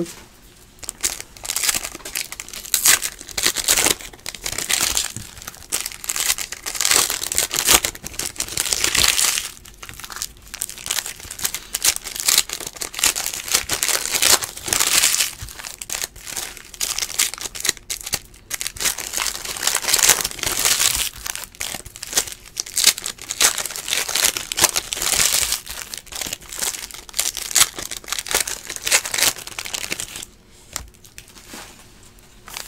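Foil trading-card pack wrappers being torn open and crinkled by hand, an irregular crackling and rustling that keeps going throughout.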